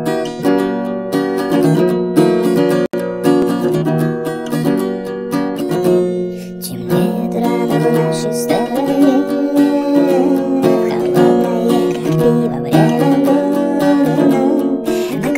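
A song played on strummed acoustic guitar, with a singing voice coming in about halfway through. The sound cuts out for a split second about three seconds in.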